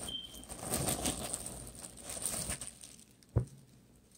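Clear plastic poly bag crinkling and rustling as a T-shirt is pulled out of it and shaken loose. The rustling dies away, and a single soft thump comes about three and a half seconds in.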